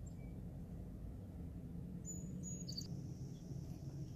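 Faint outdoor ambience with a steady low rumble, and a thin, high, steady tone that comes in about halfway through and holds.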